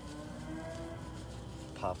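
A man's long, drawn-out "uhh" of hesitation, held on one slowly rising pitch, followed near the end by the spoken word "poplar".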